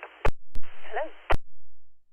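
Air-band radio receiver: sharp squelch clicks as transmissions key on and off, with a short burst of radio hiss carrying a single brief word, cut off by another click and followed by dead air.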